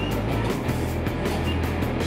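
New York City subway train running steadily through the tunnel while an N train passes close alongside.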